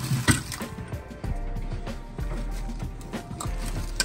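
Background music playing, with plastic packaging crinkling and a few sharp clicks as new suspension parts in their bags are handled, the sharpest about a third of a second in.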